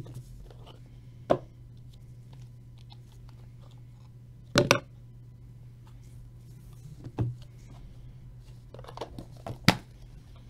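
Cardboard pack box and trading cards being handled and set down: a few sharp taps and clicks, about a second in, a double one near the middle, another about seven seconds in and the loudest near the end, over a steady low hum.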